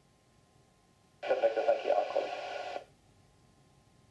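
Short air traffic control radio transmission heard over an airband receiver: about a second and a half of garbled, narrow-band voice that switches on and cuts off abruptly, with faint hiss around it.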